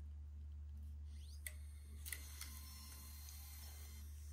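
A few faint clicks as a MiniDV cassette is pressed into a camcorder's cassette compartment, over a steady low hum.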